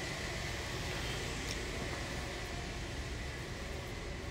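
Steady room noise, a hiss and low hum with a faint steady high tone, picked up by a phone's microphone.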